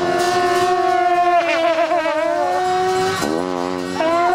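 Tibetan monastic horns played together, holding one long droning note with a wavering ornament in the middle, then breaking off after about three seconds and swooping back up to the note near the end.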